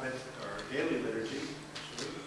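A man's voice speaking, over a faint steady low hum.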